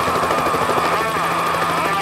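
A helicopter flying past close by and moving away: a steady high whine from the rotor and turbine, with a sweep in pitch about halfway through as it passes.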